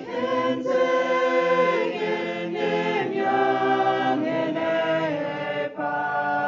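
Mixed choir of young men and women singing a hymn a cappella in harmony, holding long chords and moving between notes, with brief breaths between phrases.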